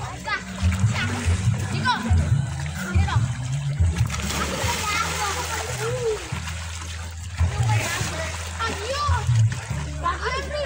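Children splashing and shouting in a swimming pool, with the splashing heaviest around the middle. Background music with a steady bass line runs underneath.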